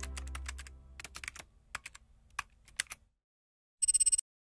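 Keyboard-typing sound effect: a quick, irregular run of clicks, one per letter as a tagline types out, over the fading tail of a low sustained note. A short bright shimmering burst comes near the end.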